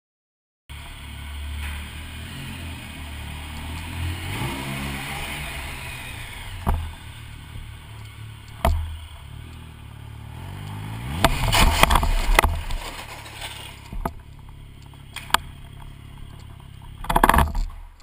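Triumph Sprint GT motorcycle's three-cylinder engine running at walking pace, heard from a helmet camera, its pitch falling as the bike slows. About halfway through, a loud burst of scraping, thudding and clattering as the bike goes down in a low-speed slide the rider blames on leaves in the road.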